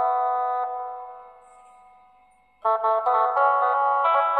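Casio SA-21 mini electronic keyboard being played: a held note fades away over about two seconds, then a quick run of melody notes starts abruptly about two and a half seconds in.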